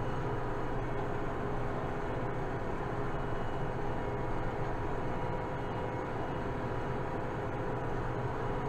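Kubota M7060 tractor's four-cylinder diesel engine running steadily under way, heard from inside the cab as an even drone.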